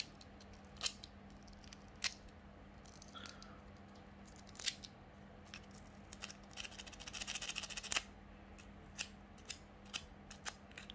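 Sandpaper rubbed along a thin coated copper wire to scrape its insulating coating off: scattered light clicks from the handling, with a run of quick rasping strokes about seven seconds in.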